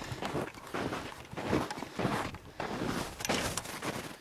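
Footsteps in snow, about three steps every two seconds.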